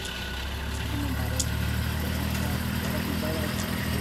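Safari vehicle's engine idling steadily, a low even hum.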